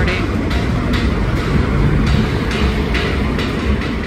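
Music from the Bellagio fountain show carrying across a busy street, mixed with the steady rumble of passing traffic.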